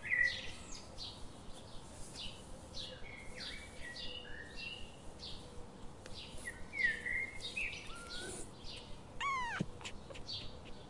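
Small birds chirping and twittering in short, repeated calls, with one louder call that slides down in pitch near the end.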